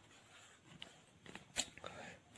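Faint handling noise: a few soft clicks and rustles as a hand touches the page of a paperback book, with a quiet room behind.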